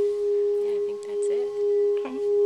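A steady ringing tone held at one pitch, with fainter overtones above it, over faint soft voices.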